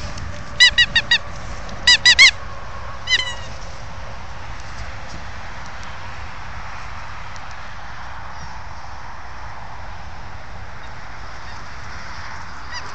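Squeaky toy ball being squeezed in a dog's jaws, giving sharp high-pitched squeaks: a quick run of four, then three, then a single one about three seconds in. Steady outdoor background hiss for the rest of the time.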